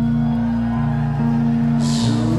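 Live rock band playing a slow, droning passage: held electric guitar notes over a bass line that steps between notes, with a short rush of high-pitched noise near the end.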